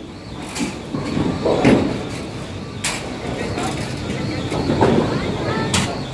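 Bowling alley noise: a steady rumble of balls rolling on the lanes and ball return under background chatter, with two sharp knocks, about three seconds in and near the end.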